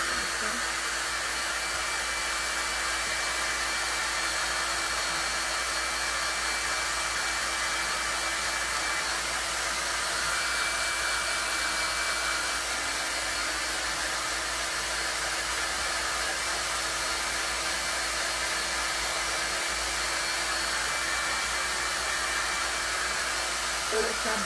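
Small handheld hot-air dryer blowing steadily, with a constant motor hum and whine. It is drying a fresh coat of white PVA paint on a wooden box.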